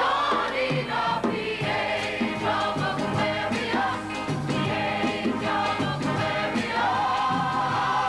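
A rock-musical number sung by a group of voices in chorus over a band, ending on a long held note near the end.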